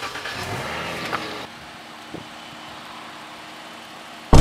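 Chrysler 300's engine starting from the push button: it fires and revs up briefly, then drops to a steady idle about a second and a half in.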